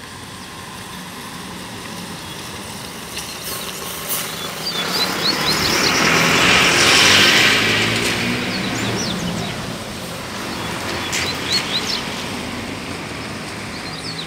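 A motor vehicle passes by, its sound swelling to a peak about halfway through and then fading away. Over it come brief runs of short, high chirping notes from coleiros (double-collared seedeaters).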